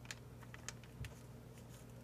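Faint crinkles and light clicks of a clear plastic bag of paper pieces being handled, with a soft thump about a second in, over a low steady hum.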